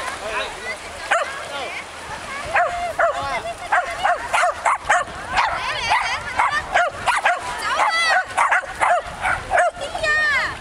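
Shetland sheepdog barking and yipping excitedly: short, high calls repeated over and over, coming thick and fast towards the end.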